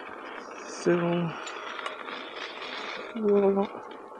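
An electric unicycle rolling along a gravel path: a steady gritty noise from the tyre running over the grit. Two short, steady-pitched hums from the rider come about one second and three seconds in.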